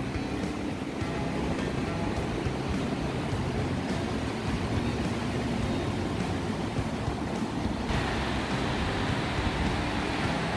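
Ocean surf breaking and washing up a sandy beach, a steady wash of noise, with wind rumbling on the microphone. The hiss grows brighter about eight seconds in.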